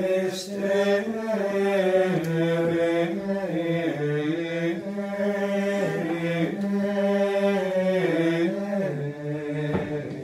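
Latin plainchant sung by male voices: a slow, unaccompanied melody that holds each note and moves in small steps, settling onto lower notes near the end.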